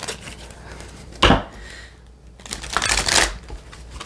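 An oracle card deck being shuffled by hand: a sharp snap of cards about a second in, then a longer rush of shuffling near the end.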